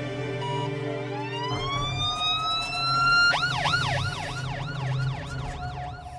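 Ambulance siren winding up in a rising wail, then switching to a fast warble that swings up and down about three times a second.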